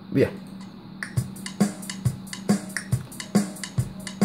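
Playback through speakers of a freshly recorded drum-machine pattern with the software metronome click sounding underneath it, starting about a second in as even, regular beats. A steady low electrical hum runs beneath.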